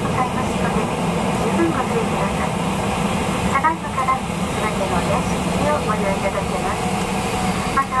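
Steady jet engine and cabin noise inside a Boeing 737 airliner taxiing after landing, with a flight attendant's voice over the cabin PA running on through it.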